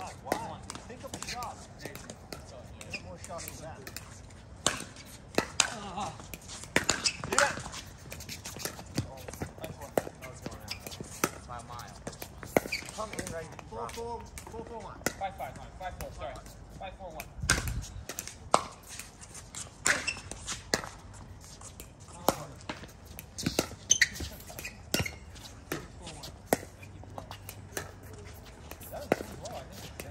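Pickleball rallies: sharp pops of paddles striking the plastic ball and of the ball bouncing on the hard court, coming at irregular intervals a second or a few seconds apart.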